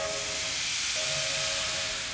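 Steam locomotive sound: steam hissing, with a steady whistle tone that drops out briefly about half a second in and then returns. The hiss fades near the end.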